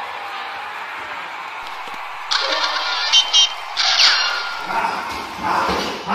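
High-pitched shrieks and squeals from young children, starting about two seconds in and breaking off and on for the next two seconds, over a steady background hiss.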